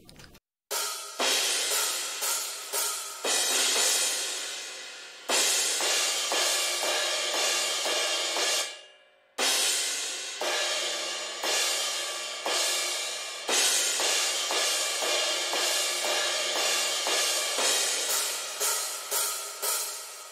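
Isolated cymbal track from a metal drum mix, with crashes and hi-hats playing hit after hit, each ringing off. It is run through a 15 kHz low-pass filter that keeps the cymbals' sizzle but slightly tames the hi-hats' ear-piercing top. The playback stops briefly a little before halfway and then resumes.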